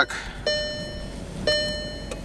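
A Volkswagen's dashboard warning chime dinging twice, repeating about once a second, each ding starting sharply and fading out.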